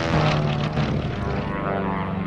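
Propeller engine of a small biplane running steadily as it flies past, a continuous even drone.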